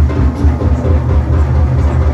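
Large drum kit played in a busy, continuous groove of drum hits and cymbals, over a steady, heavy low bass.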